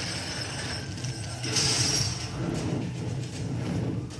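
Film trailer soundtrack playing back: a dense, rumbling mix of sound effects with a hissing swell a little before the middle.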